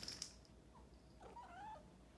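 A cat giving a soft, short meow about a second and a half in, after a few faint clicks near the start.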